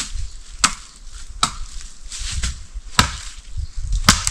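Wood being chopped by hand: a series of sharp chopping strikes, irregularly spaced about a second apart, as firewood is cut.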